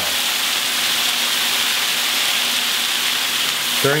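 Chicken stock sizzling steadily in a hot nonstick pan of toasted arborio rice, a first ladle of liquid being absorbed at the start of cooking risotto.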